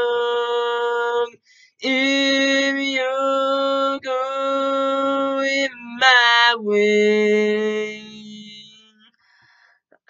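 A man singing a cappella, holding long wordless notes one after another with short breaks between them. The last note is lower and fades away about nine seconds in.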